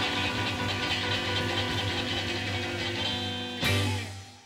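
Live rockabilly band playing, with a double-neck electric guitar and sustained chords. A final chord is struck near the end and fades away.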